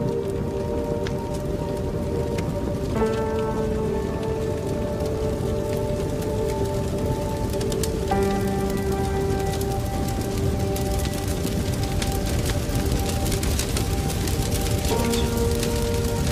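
Film score of held, slowly shifting chords, changing about three, eight and fifteen seconds in, over the crackling of a large fire burning through a room, with sharp crackles coming thicker in the second half.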